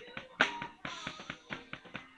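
Drum kit played with sticks: a quick run of drum strokes with a loud accented hit about half a second in and a cymbal ringing on after about a second, over steady pitched music underneath.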